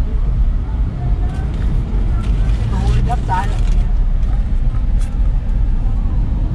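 Steady low rumble inside a car's cabin, the engine and road noise of the vehicle. A brief vocal sound comes about halfway through.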